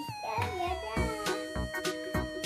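Upbeat background music with a steady beat, and a wavering pitched glide in the first second.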